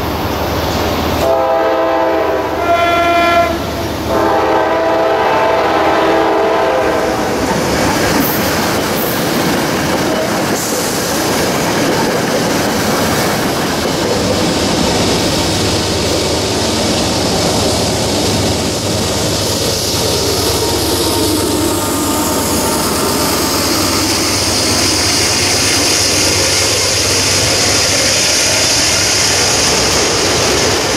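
A train horn sounds a multi-note chord in two blasts, starting about a second in and ending at about seven seconds. Then trains rumble and clatter along the rails, with the cars of a freight train rolling by near the end.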